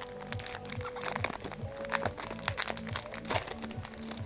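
Plastic foil wrapper of a Pokémon TCG booster pack crinkling and crackling as it is torn open and handled, in quick dense bursts, over background music.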